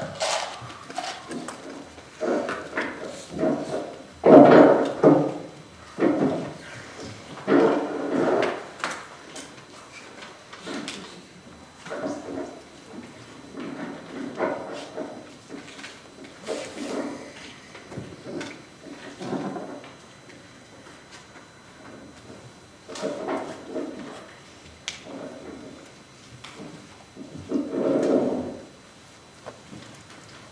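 Irregular bursts of human vocal sound without recognisable words, repeating every second or two. The loudest burst comes about four seconds in.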